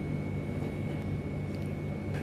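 Steady low background hum with a faint constant high-pitched whine above it; no distinct event stands out.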